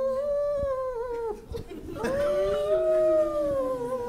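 A dog howling: two long howls, the first over about the first second, the second starting about two seconds in and slowly sinking, played back over the room's speakers.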